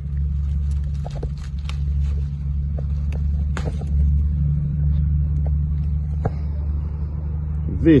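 A steady low rumble with scattered light clicks and rustles as tomato plants are handled close to the microphone.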